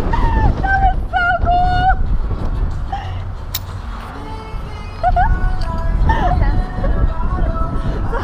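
Wind rushing over the rig-mounted microphone during a wire-guided descent jump, with the jumper's high-pitched shrieks in the first two seconds. The wind eases a little past the middle, and voices and pitched sounds come back after about five seconds as she nears the ground.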